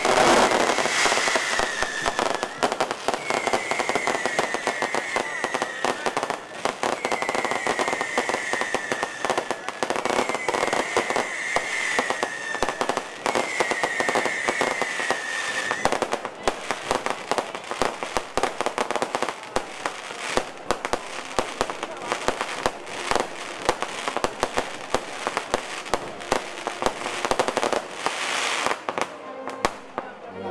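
Fireworks display: a dense, continuous run of crackles and bangs from bursting shells and fountains, thinning out near the end. In the first half a short falling whistle repeats five times, about every three seconds.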